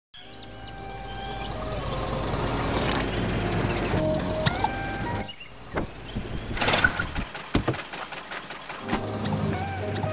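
Cartoon soundtrack: a car engine running and growing steadily louder over light music for the first five seconds. After that comes a quick run of sound-effect clicks, knocks and a whoosh, and the low engine rumble returns near the end.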